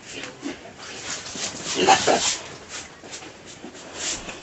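Young fattener pigs grunting, with one louder call about two seconds in, over short scraping strokes of a plastic scrub brush on a pig's back.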